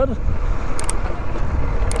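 Motorcycle engine running while riding, under a steady low rumble of wind on the microphone, with two brief high clicks about a second apart.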